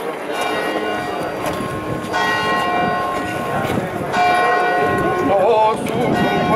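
A church bell striking three times, about two seconds apart, each stroke ringing on and fading, over the murmur of a busy street. Near the end a man's voice begins to sing.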